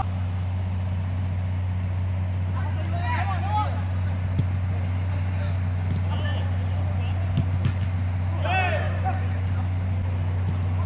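A steady low mechanical hum, the loudest thing throughout, under football players' distant shouts about three seconds in and again near the end, with a few short sharp knocks in between.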